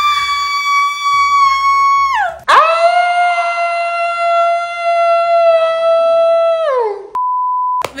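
A woman screaming in two long held screams, the first higher and the second lower and longer, each falling in pitch as it dies away. Shortly before the end comes a short, steady electronic beep.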